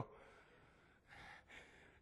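Near silence, with a faint, short intake of breath a little over a second in.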